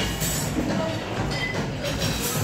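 Steady restaurant background hubbub, with a metal shellfish cracker squeezing a shellfish claw to crack the shell.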